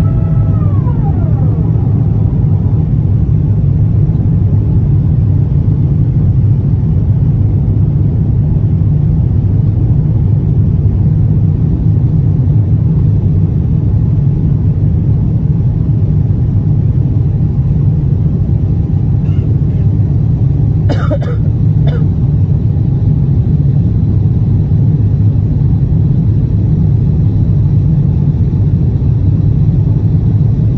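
Cabin noise inside an Airbus A350-1000 climbing out after takeoff: a steady, loud low rumble of the Rolls-Royce Trent XWB engines and airflow over the fuselage, with no change in level.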